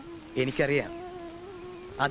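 A steady low humming tone that carries on throughout, with a brief burst of voice about half a second in.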